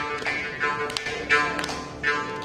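Mridangam and morching playing together in a tani avartanam in Adi tala. The morching twangs at one steady pitch while its overtones sweep up and down, over crisp mridangam strokes, with a loud accent about a second and a half in.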